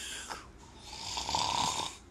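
A person imitating loud snoring: one long snore trails off just after the start, and a second one builds about half a second in and stops just before the end.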